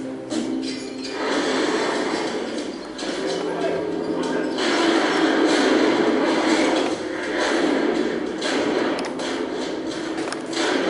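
A war documentary's soundtrack playing over loudspeakers in a room, a dense mix of music, noise and indistinct voices that swells about a second in.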